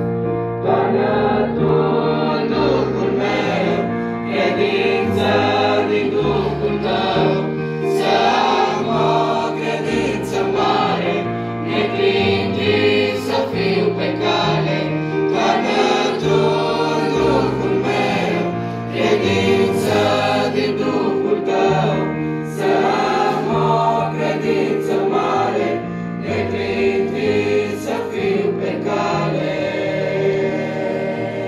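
Mixed youth choir of boys and girls singing a hymn in parts, accompanied by a keyboard holding sustained bass notes.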